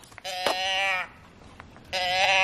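A handheld novelty sound can, a small tip-over noise-maker toy, giving one drawn-out pitched animal-like call about two-thirds of a second long, near the start, with a steady pitch that drops slightly as it ends.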